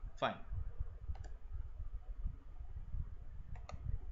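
Computer mouse clicking: two pairs of quick clicks, one about a second in and one near the end.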